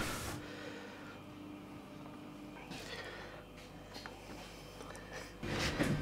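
Quiet workshop room tone with a faint steady low hum. There is faint noise about three seconds in, and louder handling sounds begin near the end.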